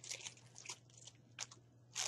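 Faint crinkling and crackling of a clear plastic package being handled and opened by hand, in scattered short crackles that thin out near the end.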